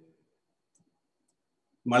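A pause in a man's speech: his voice trails off at the start and comes back near the end, with near silence in between.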